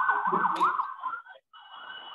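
A wailing sound whose pitch warbles quickly up and down, coming through a participant's open microphone on an online call; it breaks off briefly near the end, then carries on fainter. The lecturer takes it for a song playing somewhere.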